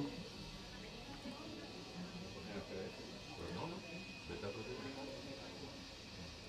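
Faint, indistinct voices of several people talking in a small office, low in the background.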